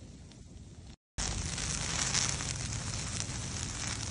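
Close-up crackling of fire burning through dry leaf litter and pine needles. It is softer at first, cuts out completely for a moment about a second in, then comes back louder and denser.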